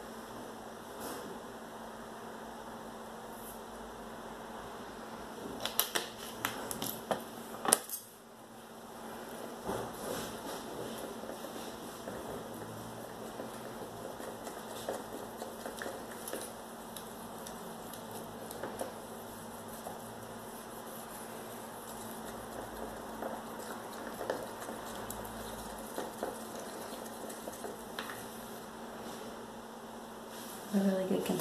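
Wooden craft stick stirring acrylic pouring paint in a plastic cup, a rapid run of small scrapes and ticks against the cup wall. There is a cluster of louder clicks and knocks about six to eight seconds in, and a steady low hum throughout.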